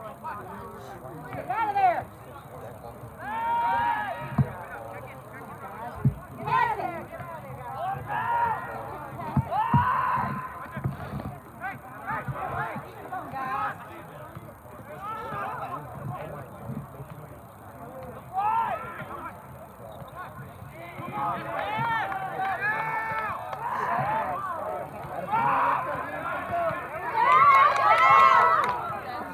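Unintelligible shouting and calling voices of players and onlookers at a soccer game, coming and going throughout, with a few short sharp thumps.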